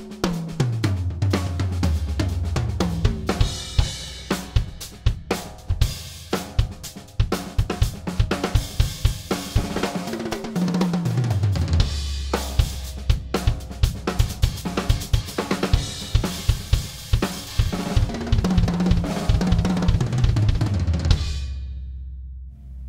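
A DW Collector's Series Purpleheart drum kit played as a full kit: kick, snare with the wires on, and toms driving a groove under crashing and riding cymbals. Near the start and again about ten seconds in there are fast fills that step down the toms from high to low. The playing ends with a crash ringing out just before the end.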